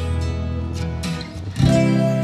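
Background music: acoustic guitar strumming chords, with a louder new chord struck near the end.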